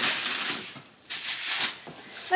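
Wrapping paper tearing and crinkling as a child rips open a gift, in two rushes with a short lull about a second in.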